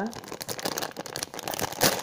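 Clear plastic packaging bag crinkling as it is handled, a run of small crackles with a louder crinkle near the end.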